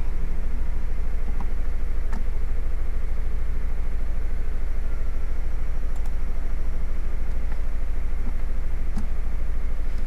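A loud, steady low hum, unchanging throughout, with a few faint clicks scattered through it.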